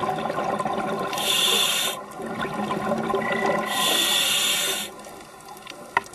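Scuba diver's exhaled bubbles heard underwater: two loud bursts of bubbling from the regulator, each about a second long, over a constant faint crackling.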